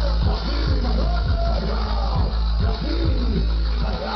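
Live hip hop music played loud through a concert PA: a beat with a heavy bass line and a voice-like line gliding up and down in pitch over it.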